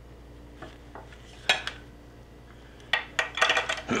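Disposable plastic piping bag being handled, with its metal decorating tip clicking: one sharp click about a second and a half in, then a quick run of crinkles and clicks near the end.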